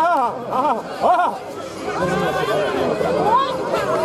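Crowd of spectators talking and shouting, with several voices calling out over one another.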